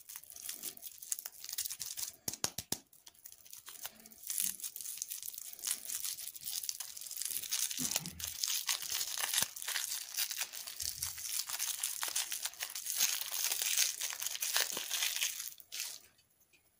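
A crinkly plastic candy wrapper being twisted, torn and peeled off a small lollipop by hand: continuous dense crackling and rustling with many small sharp crackles.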